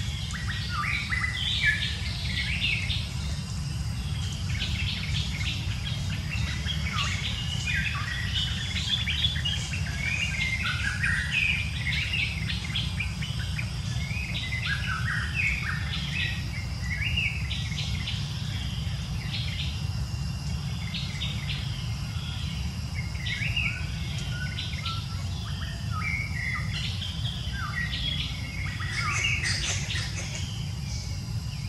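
Birds chirping and calling in the forest canopy: many short, quick notes overlapping throughout, over a faint steady high insect-like tone and an even low rumble.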